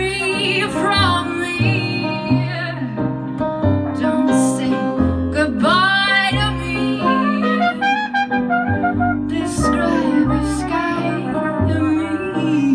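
Live jazz band playing a slow song, a trumpet carrying the melody over piano and bass.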